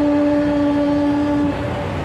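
A woman's voice leading an Islamic devotional dzikir chant into a microphone, holding one long steady note that ends about one and a half seconds in.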